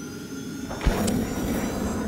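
Logo sound sting: a swelling whoosh with a sharp low hit about a second in, then fading away.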